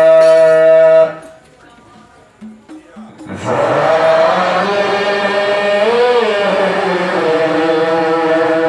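A man's voice chanting an Islamic qasida line in long, slowly ornamented held notes. The first held note cuts off about a second in; after a pause of about two seconds the voice returns with a long line that bends up and down in pitch midway.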